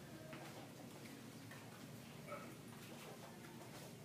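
Near silence in a quiet room, with a few faint light taps and a brief faint squeak about two seconds in.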